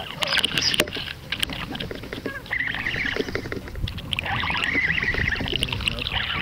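Water splashing and sloshing, with scattered sharp knocks and clicks, while a hooked largemouth bass is fought on the line.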